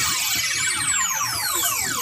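Swooping electronic tones gliding up and down in many overlapping arcs, a sweeping effect inside the music.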